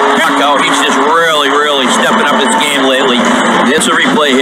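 Excited hockey play-by-play commentary over an arena crowd cheering a goal.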